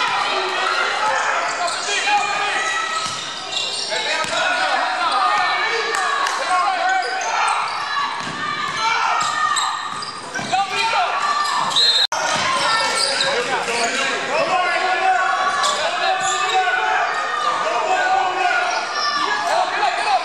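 Sounds of a basketball game echoing in a large gym: a ball dribbling on the hardwood court, shoes on the floor and players' voices calling out. The sound drops out for an instant about twelve seconds in.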